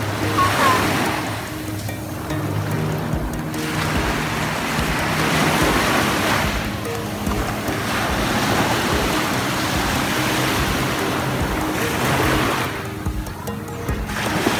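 Small waves washing onto a sandy beach, the surf swelling and fading every few seconds, with background music of held low notes under it.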